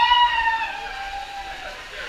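A person's high-pitched yell, held for nearly two seconds and sinking slowly in pitch.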